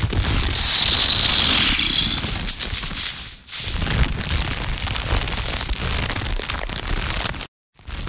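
Dense, loud noise-based sound effects for a title sequence, a deep rumble with hiss above it, loudest in the first two seconds. It drops out briefly about three and a half seconds in and cuts off suddenly near the end.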